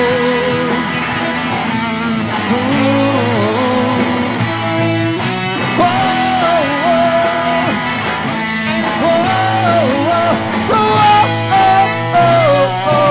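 Live rock band playing, with a saxophone carrying a sliding melodic lead line over electric guitar, bass and drums.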